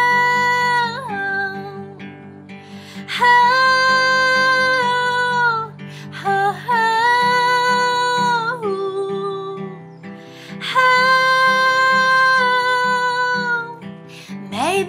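A young woman sings four long held wordless notes on 'oh', with short breaks between them, over a strummed acoustic guitar.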